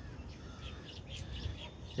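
Birds chirping faintly, a few short high calls scattered through the moment, over a low steady background rumble.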